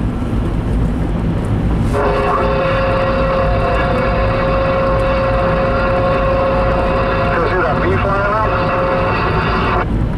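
Road and tyre noise inside a moving car. From about two seconds in until just before the end, a steady pitched tone with overtones sounds over it, wavering briefly about eight seconds in.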